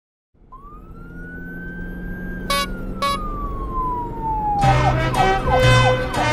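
Intro sound effect: a single siren-like wail that rises and then falls slowly over a swelling rumble, with two short beeps in the middle. Upbeat rhythmic music starts near the end.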